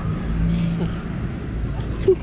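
Low, steady hum of a motor vehicle's engine running.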